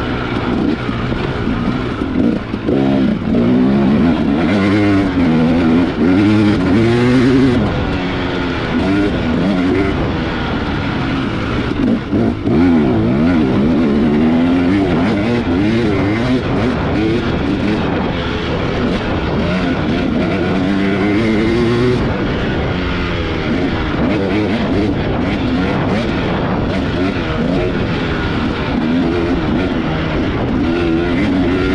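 A carbureted 2018 Husqvarna TX300 two-stroke dirt bike engine being ridden hard. The revs rise and fall over and over as the throttle is opened and backed off.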